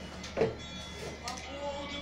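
A spoken word of storytelling narration over quiet background music, whose notes are held steadily through the second half.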